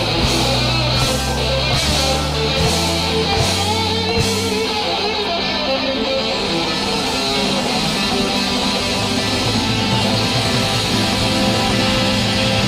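A rock band playing live, with electric guitar to the fore over bass and drums; the bass steps through several note changes in the first few seconds.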